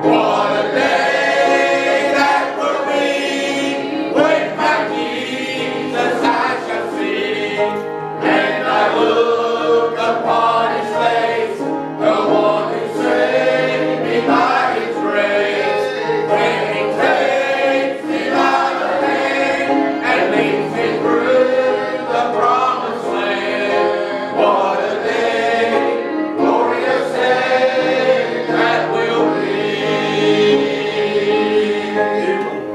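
A church congregation singing a hymn together, sustained notes carried by many voices, led by a man at the pulpit.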